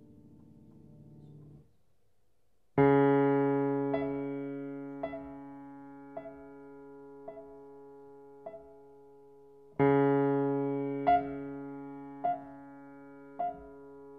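Grand piano playing a contemporary piece. A soft low sound fades out. After a pause of about a second, a loud low chord is struck and left ringing while a single higher note repeats about once a second. A second loud chord comes near the end, and the repeated note goes on.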